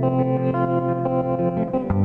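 Instrumental passage of a song with no singing: guitar holding sustained chords, changing to a new chord near the end.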